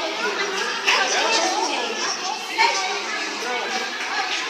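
Several people talking over one another, a jumble of overlapping voices with no single clear speaker, with a couple of briefly louder moments.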